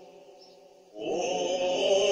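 Greek Orthodox Byzantine chanting by voices. It falls nearly quiet, then a new sustained sung phrase comes in about a second in.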